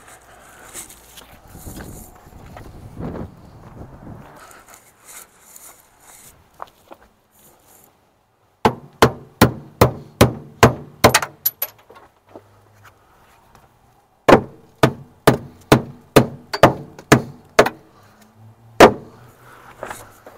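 Hammer blows on the cut-off seat-mount bolts under a Kenworth K100 cab floor, knocking them free. After several seconds of faint rustling come two runs of quick, sharp strikes, about three a second, with a pause between them. The last blow is the loudest.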